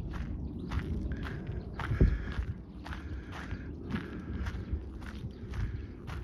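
Footsteps on a gravel path at an even walking pace, about three steps every two seconds, each step a short crunch.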